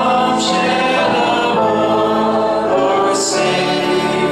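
A congregation singing a hymn together, many voices holding long notes.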